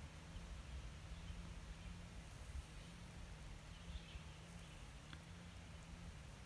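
Quiet woodland background: a low steady rumble on the microphone, with a couple of faint high chirps about four seconds in and a single faint click near the end.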